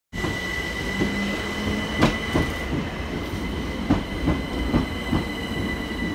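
Electric multiple-unit passenger train moving along a station platform. Its wheels click over rail joints at irregular intervals, a few per second, over a steady rumble and a steady high whine.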